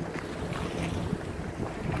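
Wind blowing across the microphone outdoors: a steady low rumble with no speech.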